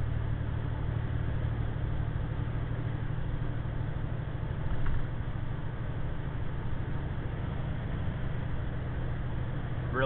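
2009 diesel truck running at highway speed, heard inside the cab: a steady low engine drone mixed with road and wind noise.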